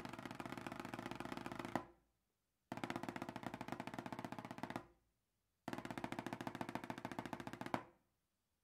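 Drumsticks playing tremolo rolls on a 10-inch plastic practice pad: three rolls of about two seconds each with short pauses between, the first and last closing on an accented stroke.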